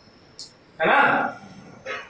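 A man's voice says a short two-word phrase, "hai na", about a second in, after a brief click.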